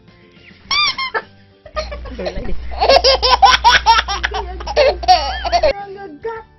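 A woman laughing hard in rapid, high-pitched bursts, with a short giggle a little under a second in and a long run of laughter over the last three seconds.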